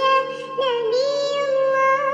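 A high-pitched voice singing a sholawat, an Islamic devotional song in praise of the Prophet Muhammad, in wavering notes with one long held note through most of it, over a steady musical backing.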